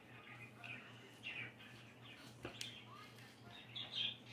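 A knife slicing slowly through a large, firm Agaricus bitorquis mushroom on a bamboo cutting board: faint soft scrapes, with a small click about two and a half seconds in, over a steady low hum.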